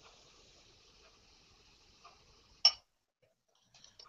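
Stout being poured from a bottle into a stemmed glass: a faint hiss of the pour that stops about two and a half seconds in with a single sharp glassy clink, the loudest sound.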